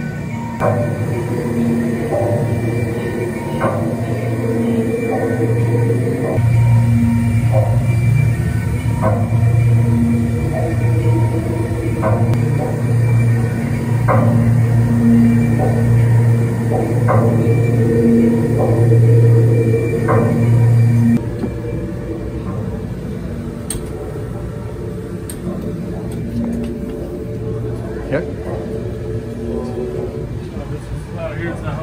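Eerie ambient soundtrack of a haunted-house attraction playing over its speakers: a loud low drone that swells and fades in pulses of a second or two, with scattered short higher tones over it. It drops noticeably in level about twenty seconds in.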